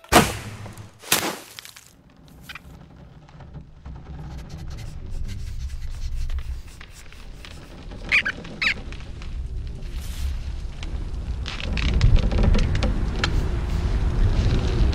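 Animated-film sound effects: two sharp snaps in the first second or so, then a low rumble that slowly builds. Brief squeaky cries come about eight seconds in, and the rumble swells louder near the end.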